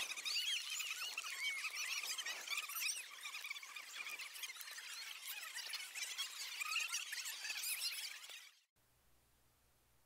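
Faint, many overlapping high-pitched chirps and squeals that die away about eight and a half seconds in.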